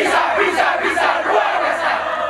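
A team of young footballers shouting a yell together, many voices chanting at once.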